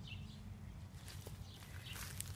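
Faint outdoor background with a steady low rumble, and a few soft clicks and rustles about halfway in from a phone being handled and moved over garden plants.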